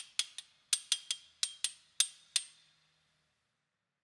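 Knife blades struck together as percussion: about ten bright, ringing metal strikes in an uneven rhythm, the last one ringing out about two and a half seconds in.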